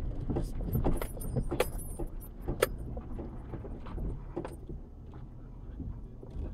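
Vehicle moving slowly over a rough, muddy dirt track, heard from inside the cab: a low engine and road rumble with frequent clicks and rattles, easing off and growing quieter in the second half as it slows.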